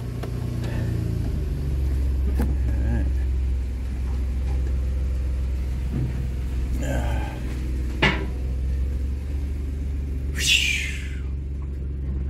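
2007 Dodge Nitro's V6 engine idling steadily, heard from inside the cabin, its low hum dropping a little in pitch about a second in. A few light clicks and brief rustling noises sit over it.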